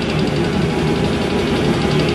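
A live brutal death metal band playing: heavily distorted, low-tuned guitars and bass over drums, loud and dense with no break.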